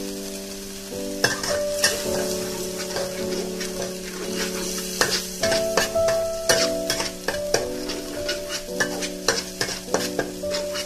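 Chili paste frying and sizzling in a wok, stirred with a metal spatula that clicks and scrapes against the pan many times, over background music of steady held notes.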